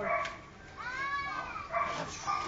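Belgian Malinois puppies barking in short high yips, with a longer high call that rises and falls about a second in.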